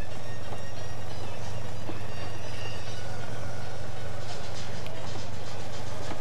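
Steady low engine drone from a race vehicle, heard as the broadcast's live road sound, with a faint hiss above it.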